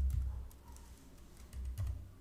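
A few keystrokes on a computer keyboard as letters are typed: separate key clicks near the start and around half a second in, and a couple of quick ones near the end.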